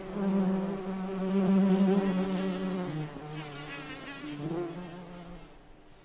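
Cockchafer (May beetle) buzzing in flight: a low droning hum that swells and falls, then fades out near the end.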